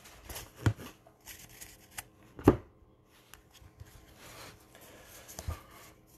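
Bowman Draft baseball cards being flipped through by hand: soft sliding of card stock with a few sharp taps, the loudest about two and a half seconds in.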